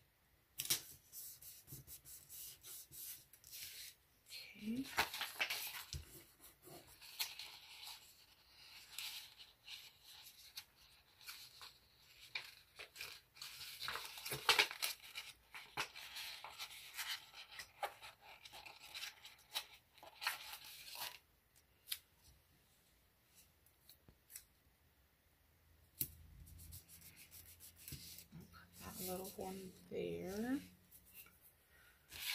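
Paper sticker sheet rustling and crackling as stickers are peeled off it and handled, a dense run of quick scratchy rustles that dies away about eight seconds before the end.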